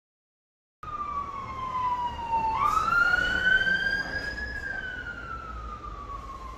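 Emergency vehicle siren in a slow wail: it starts suddenly about a second in, falls in pitch, rises again around halfway, then falls slowly, over a low rumble of street noise.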